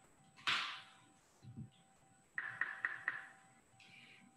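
Faint, intermittent handling noises: a short rustle about half a second in and a quick run of small clicks in the second half.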